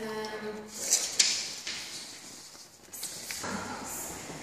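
A held, steady voice-like tone, then two sharp clicks about a second in as a closet door is handled; another held tone starts near the end.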